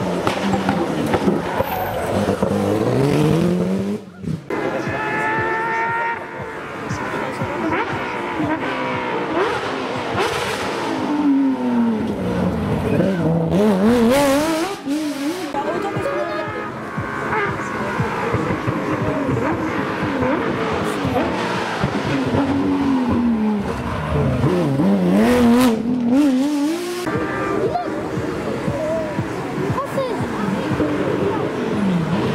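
Rally cars racing past one after another on a tarmac stage, an Alpine A110 and then a Porsche 911. Their engines are revved hard, the pitch dropping as they lift and brake and climbing again through the gears.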